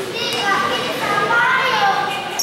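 Several voices shouting and calling out at once around a basketball court, growing louder through the second half.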